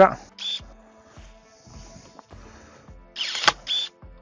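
GeoTech MS-30 cordless electric pruning shears: a brief high motor whine about half a second in. Near the end, the motor drives the blade shut through a small branch with a sharp snap, then whines again as the blade reopens.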